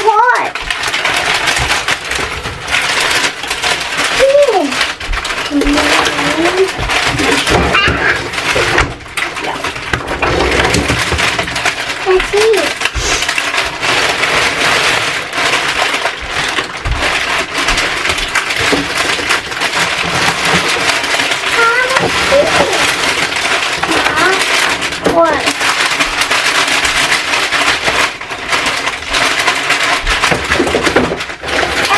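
Plastic bags of frozen food rustling and crinkling as they are handled and packed into a refrigerator's freezer drawer, with a few brief voice sounds.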